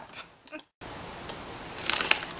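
Faint handling of a plastic poly mailer bag with scissors: quiet rustling and a few sharp clicks near the end. The sound cuts out completely for a moment a little before the middle.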